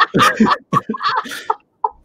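Men laughing hard in short, choppy peals that trail off near the end.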